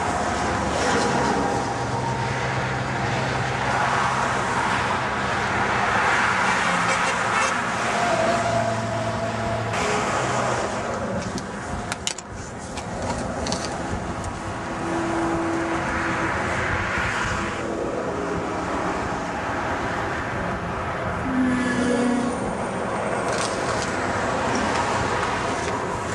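Continuous road traffic noise, with vehicles swelling past and fading one after another every few seconds.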